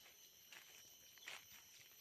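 Faint footsteps on dry leaf litter: two soft steps, about a second apart.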